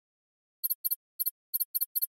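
A synthesized animation sound effect: six short, high-pitched electronic double-chirps, starting about two-thirds of a second in and coming at uneven intervals over about a second and a half.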